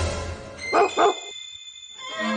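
A dog barking twice in quick succession, about a second in, over background music.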